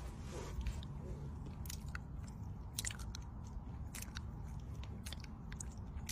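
Wet lip smacks and kissing sounds close to the microphone: a string of sharp, irregular mouth clicks.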